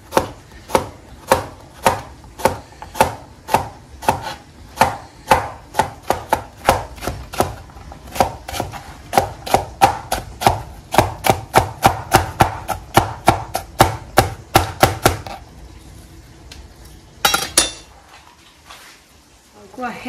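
Chef's knife chopping zucchini on a plastic cutting board: a steady run of knife strikes, about two a second at first and quicker in the middle, stopping about fifteen seconds in. A short clatter follows a couple of seconds later.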